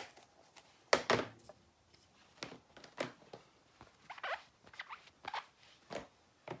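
A string of short, scratchy clicks and scrapes from plastic and acrylic stamping supplies being handled on a desk. A clear acrylic stamp block is picked up and moved. The loudest knock comes about a second in.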